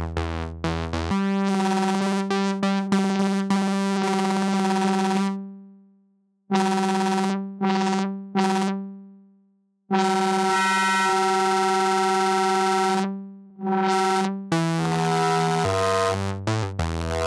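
Reaktor 6 Blocks software synthesizer patch playing bright, buzzy notes. A quick run of short notes gives way to long held notes that fade out, with short notes and brief silences between, and another quick run near the end.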